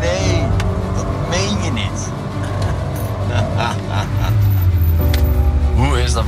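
Background music and a man's dismayed exclamations over the low running of the Ferrari FF's V12 engine.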